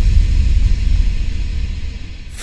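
Deep cinematic rumble from a logo-reveal sound effect, loud at first and slowly fading, with a faint hiss on top.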